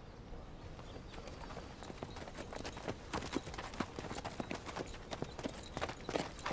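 Hooves of a saddled horse clopping faintly and irregularly as it is led at a walk.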